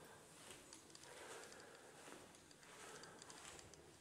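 Near silence: faint room tone with a few soft ticks.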